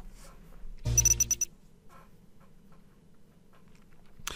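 A brief bell-like ringing sound effect about a second in: a quick run of bright, high strikes lasting about half a second, over a low hum.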